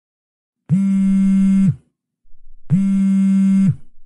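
Mobile phone vibrating with an incoming call: two buzzes, each about a second long, a second apart.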